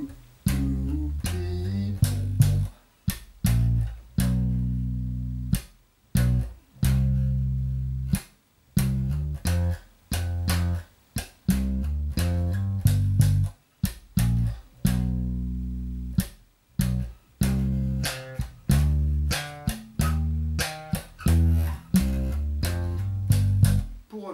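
Unaccompanied four-string electric bass (a Music Man StingRay) played slap style. A funky G-minor riff of thumb slaps and finger pops with hammer-ons, ghost notes and octave pops is played through in full. Notes are cut short between phrases, leaving brief gaps.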